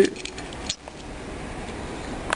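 A few small metallic clicks in the first second as steel washers, a split lock washer among them, are slipped onto the crankshaft end of a Yamaha TY 125 to hold the flywheel.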